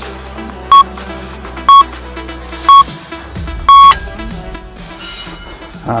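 Workout interval timer counting down the last seconds: three short beeps one second apart, then a longer final beep marking the end of the work interval, over background electronic music.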